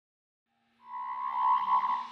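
Electronic intro sting for a logo animation: silence at first, then a little under a second in a shimmering, sustained synthesized tone swells in and holds.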